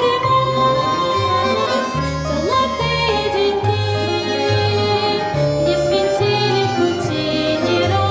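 A young woman singing a waltz solo, holding long notes, accompanied by a Russian folk orchestra of plucked strings and flutes with the bass keeping waltz time.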